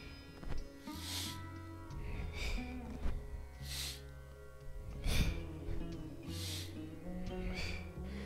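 Six short, sharp breaths, about one every second and a half, from a man exerting himself through repeated back extensions, over peaceful background music.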